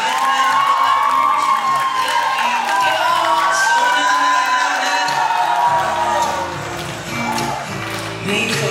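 Ballroom show-dance music over an audience cheering and whooping; about six seconds in, a deeper bass line comes into the music as the cheering thins.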